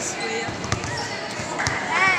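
A basketball bouncing on a concrete court floor, a few separate thuds at irregular intervals, under the chatter of voices.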